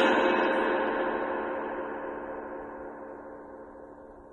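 An Istanbul Agop Xist cymbal ringing out after a single strike, its wash fading steadily, the highest overtones dying away first. This is the length of its sustain being tested.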